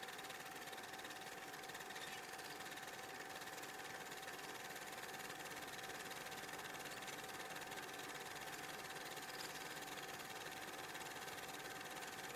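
Faint steady hiss of the recording with a thin, unchanging tone running through it; nothing else happens.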